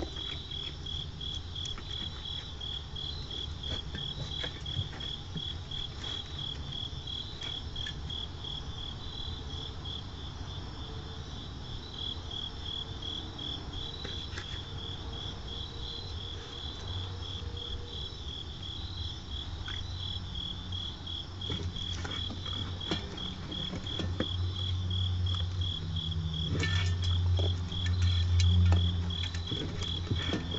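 Crickets chirping in a steady, evenly pulsed train. Scattered light clicks sit under it, and a low rumble swells in the last few seconds.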